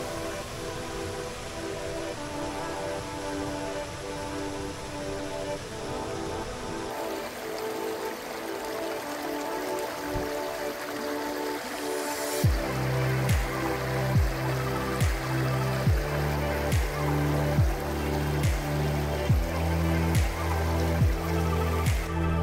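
Background music: sustained chords at first, then a bass line with a steady beat comes in about halfway through.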